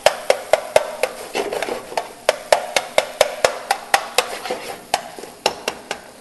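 Spatula knocking and scraping against a skillet as ground-meat sauce is stirred, a sharp tap about four times a second over a faint sizzle, the taps stopping near the end.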